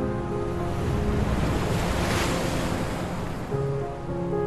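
An ocean wave swelling in and washing out, a rushing hiss that builds to its loudest just past the middle and then fades. Soft background music thins out under it and comes back near the end.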